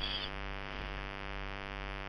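Steady electrical hum with many evenly spaced overtones, unchanging throughout, with the end of a spoken word at the very start.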